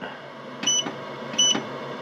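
Growatt solar inverter's control panel giving two short high beeps, about three quarters of a second apart, as its front-panel buttons are pressed to step through the display.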